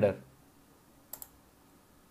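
Two quick, sharp clicks of a computer mouse button about a second in, close together.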